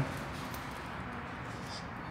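Quiet, steady background noise of an indoor hotel lobby, with no distinct sound in it.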